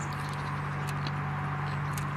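A steady low hum, with a few faint ticks of metal forks against plates.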